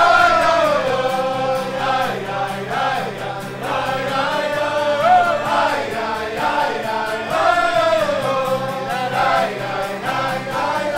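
A group of men singing a Chassidic niggun together, accompanied by a strummed acoustic guitar, in long held notes that rise and fall.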